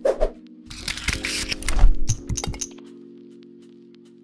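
Intro jingle: a held synth chord with a sharp hit at the start, then a loud swoosh effect from about one to nearly three seconds in that breaks up into a few clicks at its end.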